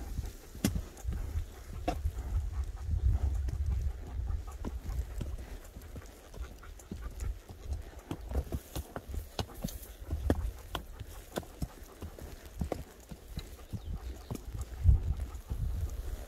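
A horse walking on a dirt trail through brush: a scatter of irregular hoof clicks and knocks over a low rumble.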